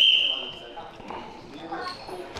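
A short, high whistle tone that starts suddenly, holds for about half a second and fades, followed by faint voices.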